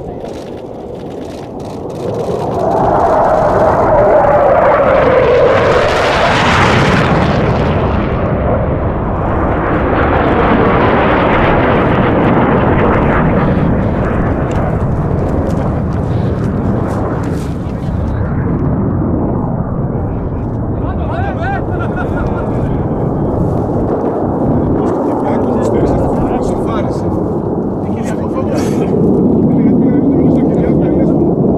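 Fighter jet, a Hellenic Air Force F-4 Phantom, making a low-level pass through a valley. Jet engine noise builds about two seconds in with a falling whine as the jet passes, peaks around six seconds in, and stays loud with more jet noise to the end.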